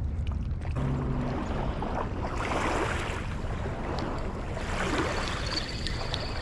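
Wind buffeting the microphone over water sloshing against the river bank, swelling in gusts. Near the end a spinning reel's handle is turned, giving a thin whine with evenly spaced ticks.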